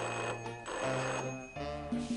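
A telephone bell ringing in repeated bursts, with music playing underneath.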